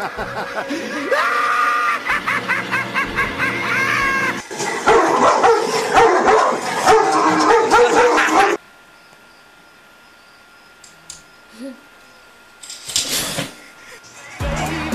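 A caged dog making loud, shrill vocal sounds, with laughter mixed in, for about eight and a half seconds; then the sound cuts off suddenly to a quiet low level, with a short loud burst near the end.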